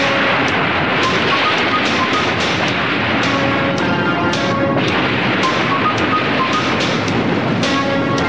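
Cartoon background score of short held synth notes over a loud, steady rushing noise: a spaceship sound effect with steam pouring out around the craft.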